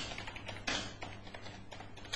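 Computer keyboard typing: a quick run of faint, irregular keystrokes, about ten characters in two seconds, a little louder at the start and under a second in.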